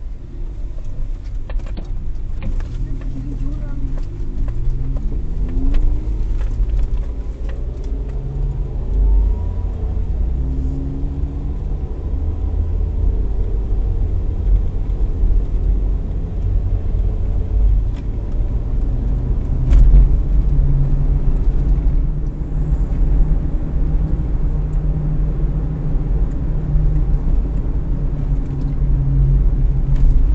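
Toyota Rush driving on a rough, unlit village road, heard from inside the cabin: a heavy, steady low rumble of engine and tyres. The engine rises in pitch as it accelerates a few seconds in and again around ten seconds in, with occasional knocks from the bumpy road surface.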